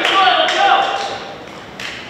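Players' shouted voices ringing in a large gymnasium, dying away a little over a second in, followed by a single sharp tap near the end.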